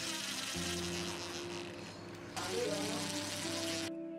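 Cordless drill/driver running to drive screws through a toggle clamp's mounting base into a board. It runs in two bursts, a longer one and then a shorter one, with a brief pause between, and stops abruptly just before the end.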